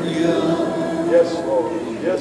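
A church congregation's voices in worship: a steady held sung note with a voice wavering over it.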